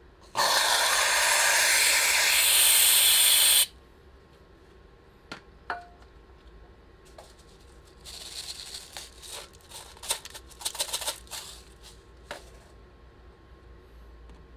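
Whipped cream dispenser spraying whipped cream onto the ice cream rolls: a loud steady hiss for about three seconds. Later, rainbow sprinkles are poured from a plastic cup and patter onto the ice cream as a quick run of light ticks.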